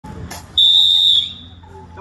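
A single blast on a whistle: one steady, high, loud note lasting a little over half a second that trails off at the end. A short click comes just before it.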